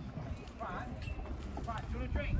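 Indistinct voices of people passing by in conversation, with footsteps on a concrete promenade and a low rumble underneath.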